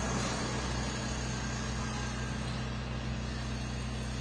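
A vehicle engine idling steadily, a low even hum over general street noise.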